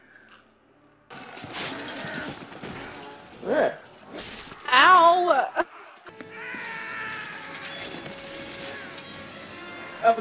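Battle-scene film soundtrack: clashing and crashes under orchestral music, starting about a second in. About five seconds in comes a loud wavering cry, and near the end there are held musical notes.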